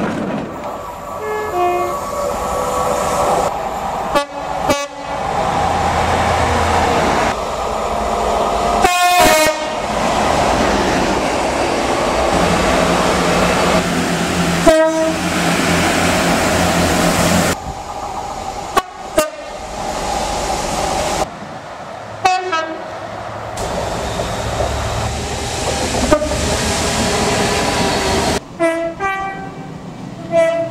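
A rapid run of British train horns, one clip after another: short horn blasts from Class 800 IET units, a Class 43 HST power car, Class 56, 66 and 67 diesel locomotives and a Class 166 diesel unit. Several of the blasts are two-tone, stepping between a high and a low note, over the rumble of the trains themselves, with abrupt changes every few seconds.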